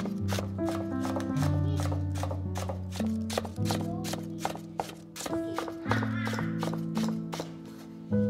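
Chef's knife slicing green onions on a wooden cutting board: a rapid run of sharp chops, about four a second, thinning out near the end. Background music with sustained piano-like notes plays underneath.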